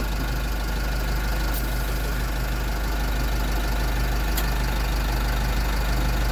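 Automatic tyre inflator running with its air chuck on a light-truck tyre valve: a steady hiss over a low mechanical hum.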